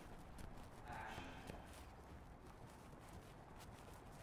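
Near silence: faint background ambience with a few light taps and a brief faint sound about a second in.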